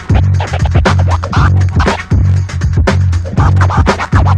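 Turntable scratching: a vinyl record pushed back and forth by hand and chopped by a DJ mixer's crossfader, in fast short strokes. Underneath runs a backing track with a repeating deep bass pattern.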